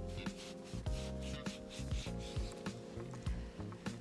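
Background music: sustained tones over a regular low pulse.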